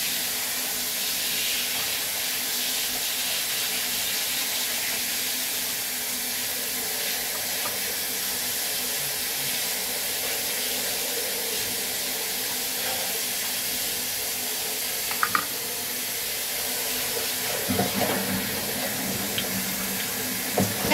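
Water spraying steadily from a handheld shower head onto a wet cat's fur and splashing into a ceramic washbasin.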